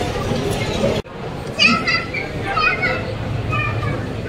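People's voices: low murmured talk, then after a sudden cut about a second in, high-pitched voices talking.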